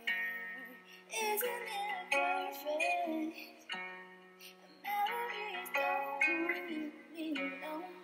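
A woman singing into a microphone over a plucked-string accompaniment, her held notes gliding and wavering while the backing notes are struck afresh every second or so.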